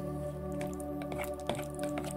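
A spoon stirring thick cauliflower purée in a plastic bowl, with soft squelching and a few light clicks, over steady background music.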